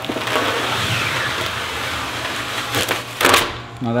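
Clear tape being peeled off the mesh of a screen-printing screen in one long, steady pull, with a louder burst a little past three seconds in.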